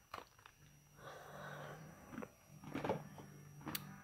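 Faint chewing and crunching of a dry snack close to the microphone, with scattered small clicks and a louder crunch about three seconds in.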